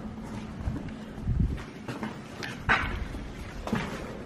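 Irregular footsteps and scuffs on a dusty, debris-strewn floor, with a dull thump a little over a second in and a brief higher sound near the middle.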